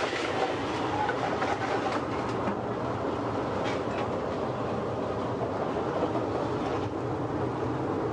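Steady sizzling and hissing from two hot aluminium sauté pans as white wine and fish stock are poured over softened shallots, with a low steady rumble underneath.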